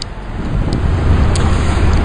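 Low outdoor rumble that grows louder about half a second in, with a couple of faint clicks.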